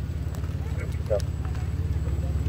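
Low, steady engine rumble of a vehicle at idle speed, as a minivan rolls slowly forward.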